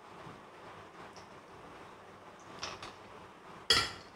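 Cucumber cold soup being served from a glass jar into a glass bowl of ice cubes with a metal utensil: a few faint clinks, then one loud, sharp clink of the utensil against glass near the end.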